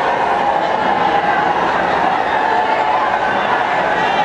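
A large crowd's voices: a steady, dense din of many people talking and calling out at once.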